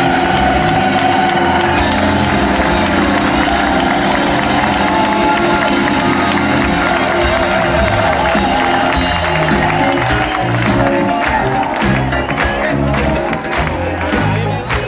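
Live band music with crowd noise. About ten seconds in, a sharp beat of about two hits a second joins in.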